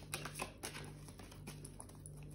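Faint light clicks and rustling of a tarot deck being shuffled to draw a clarifier card, over a low steady hum.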